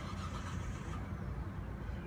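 Steady low rumble of a running car. A brief hiss starts suddenly at the outset and lasts about a second.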